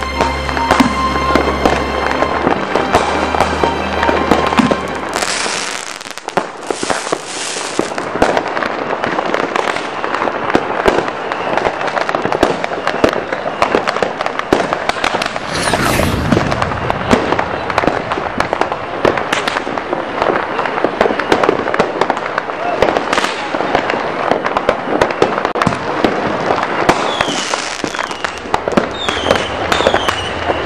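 Fireworks packed inside a burning stuffed tiger going off in a dense, continuous crackle of rapid pops and bangs. A few short falling whistles come near the end.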